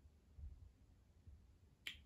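Near silence: faint room tone, with a brief soft click near the end.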